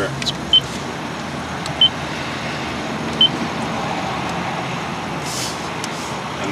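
Toyota Prius's 1.5-litre four-cylinder petrol engine running steadily, heard inside the cabin; it has started on its own to charge the hybrid battery. Three short high beeps from the dashboard touchscreen as it is pressed.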